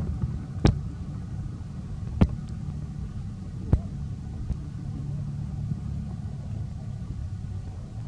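A low, steady rumble with three sharp clicks about a second and a half apart in the first half.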